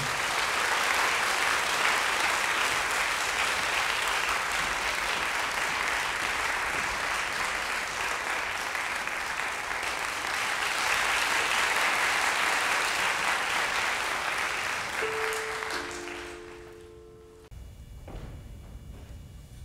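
Audience applauding steadily, fading out near the end. As it fades, a few held notes sound from the violin and cello, the players tuning before they begin.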